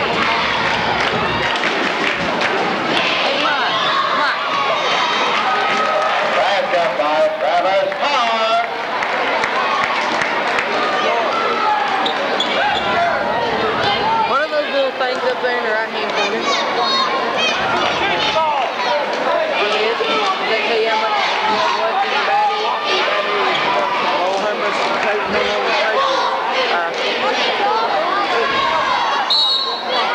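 Gymnasium crowd shouting and cheering without a break, with a basketball being dribbled on the hardwood court.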